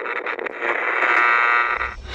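Crackling clicks, then a steady, tinny electronic buzz like radio static, which dips near the end.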